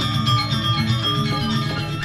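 Balinese gamelan ensemble playing: many bronze metallophones chiming together in a dense, busy stream of notes over a sustained low ring.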